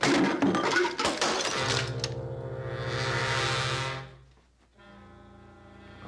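Fistfight crashes: a rapid run of thuds and knocks with glass breaking, then a loud held chord of music for about two and a half seconds. The chord ends quickly at about four seconds, leaving a faint sustained note.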